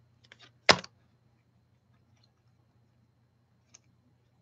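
A few small clicks and taps from paper card pieces being handled by hand, with one sharper click about three-quarters of a second in, over a faint steady low hum.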